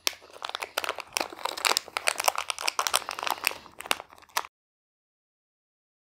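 Metallised anti-static bag crinkling as it is opened by hand: a dense run of crackles that stops abruptly about four and a half seconds in.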